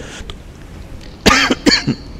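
A man coughing twice, a sudden cough about a second and a quarter in and a shorter one just after.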